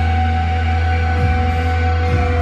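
Live electronic drone music: layered sustained tones over a loud, deep bass drone, with a low tone gliding down in pitch about a second in.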